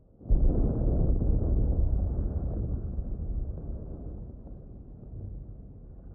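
A distant explosion on a film soundtrack: a deep boom that hits suddenly a fraction of a second in, then a long low rumble that slowly fades.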